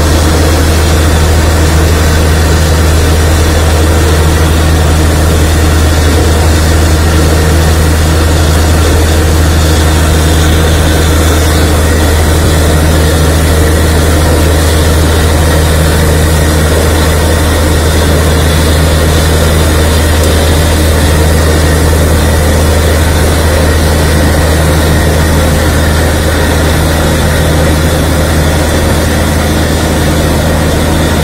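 Borewell drilling rig running steadily and loudly with a deep, unbroken hum, while water and slurry blown up out of the bore gush and splash out from under the rig: the bore is yielding water.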